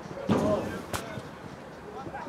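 A single sharp thud about a second in: a football being kicked hard, lofting it into the air.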